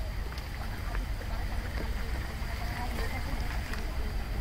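Outdoor ambience: a steady low rumble of wind on the microphone, with faint distant voices.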